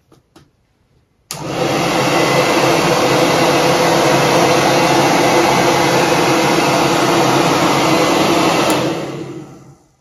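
Handheld hair dryer switched on about a second in, blowing steadily with a motor whine into a PVC pipe shoe-dryer frame. It is switched off near the end and winds down over about a second.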